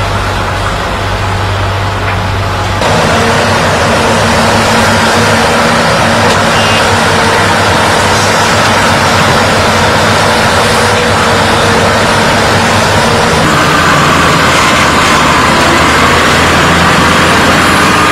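Diesel engines of excavators and dump trucks working earth: a loud, steady engine noise. Its character shifts about three seconds in and again a few seconds before the end.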